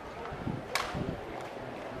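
Open-air ambience of a city square with bystanders, and one sharp click about three quarters of a second in.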